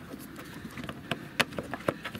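Several small sharp plastic clicks and taps, the loudest about halfway through and near the end, as a rocker switch cap is handled and turned around at a boat's helm switch panel.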